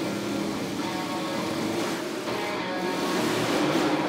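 Motorcycle engine running at steady revs as it circles the vertical wooden wall of a Wall of Death drum, with music underneath.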